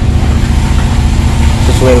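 A machine's electric motor running steadily, a loud low drone, while a hole is being enlarged.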